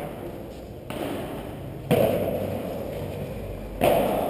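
Padel ball hits in a rally: three sharp knocks about a second or two apart, the last two the loudest, each echoing in a large hall.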